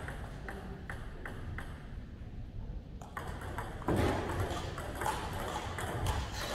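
Celluloid-type table tennis ball bounced on the table several times at an even pace, about two or three a second, before a serve; after a short pause come the clicks of a rally, ball striking bats and table, with a louder stretch from about four seconds in.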